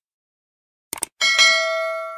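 A mouse-click sound effect, a quick double click, about a second in. It is followed at once by a bright notification-bell ding that rings on and fades away.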